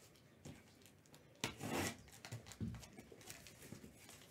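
Cardboard shipping case being handled on a table: short rubbing and scraping, the longest about a second and a half in, with a few light knocks.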